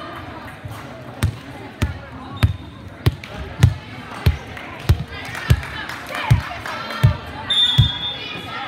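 A volleyball being bounced repeatedly on a hardwood gym floor, a sharp thud about every two-thirds of a second, over background chatter in the hall. A short, high referee's whistle sounds near the end.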